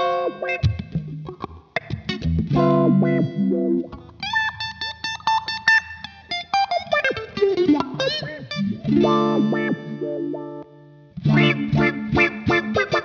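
Electric guitar played through a GFI System Rossie filter pedal: funky, choppy chord stabs, then a run of higher single notes that glide in pitch, then chords again after a brief pause near the end.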